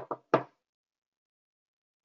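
Three quick knocks of handling noise on the microphone within the first half second, made as it is being muted; then the sound cuts out.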